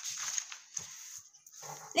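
Sheets of paper being handled and swapped on a wooden table: irregular rustling with a few light knocks.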